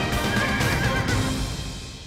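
Theme music with a horse whinny sound effect, a wavering high cry about half a second in. The music fades out near the end.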